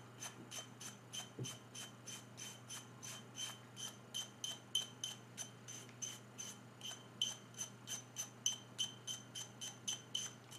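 Small toothbrush scrubbing a paraffin heater's burner part to clean off build-up, in quick, even back-and-forth strokes of about four or five a second.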